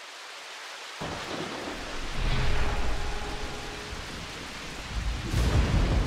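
Thunderstorm: steady rain hiss fading in, then deep thunder rumbling in from about a second in. The thunder swells around two to three seconds, eases, and swells again near the end.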